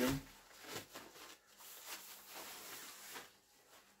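Fabric carry sleeve rustling and sliding as a carbon landing-net handle is drawn out of it, an uneven rustle that dies away just before the end.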